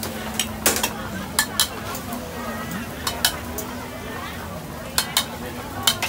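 A metal utensil stirring and clanking in a pan of frying food on a street-food stall's gas burner. About eight sharp clanks come at uneven intervals, some in quick pairs, over a steady low hum.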